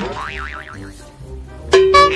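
Background comedy music with added cartoon sound effects: a boing-like wobble that rises and falls several times in the first second, then a sudden loud held tone near the end.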